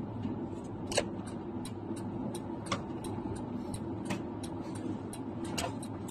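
Steady car-cabin road and engine noise from a car driving along, with a run of faint clicks about three a second over it.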